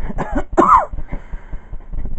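A man coughing twice in quick succession within the first second.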